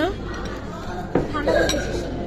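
Cutlery clinking against a dinner plate, with one sharp clink a little after a second in, over the murmur of a restaurant room.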